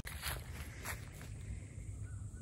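Faint footsteps in grass and dry leaf litter, with a couple of brief soft crunches.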